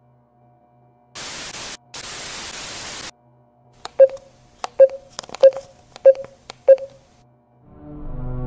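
Two bursts of hissing white-noise static, the first short and the second about a second long, followed by five sharp clicks about two-thirds of a second apart, each with a short ring.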